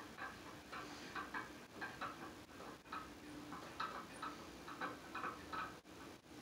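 Faint, irregular light clicking from the Gillette tinfoil phonograph's mechanism being turned and adjusted by hand, about three or four clicks a second over a low hum.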